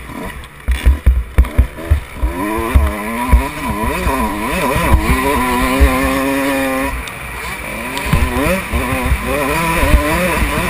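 Motocross bike's engine revving up and down as the rider works the throttle through a turn, then held at a steady high pitch for about two seconds before the throttle shuts off about seven seconds in and the revs climb again. Heavy low thumps in the first two seconds.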